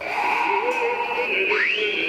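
A high, held electronic-sounding tone over wavering lower notes, with one quick upward slide about three-quarters of the way through. It is music or a sound effect added to the edited clip.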